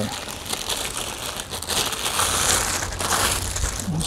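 Clear plastic packaging bag crinkling continuously as hands handle the wrapped gas regulator and hose, loudest a little past the middle.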